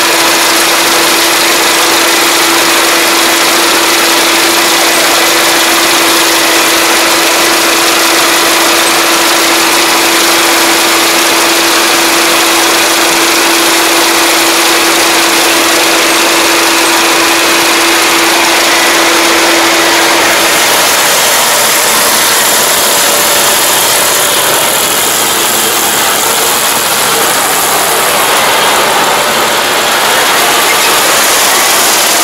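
ISEKI Japan-series rice combine harvester running close by while cutting rice, its engine, cutter and threshing mechanism making a loud, steady mechanical din. A steady hum in the noise stops about two-thirds of the way through and the sound shifts slightly.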